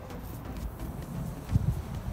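Footsteps on concrete over a low outdoor background rumble, with a few soft thumps about one and a half seconds in.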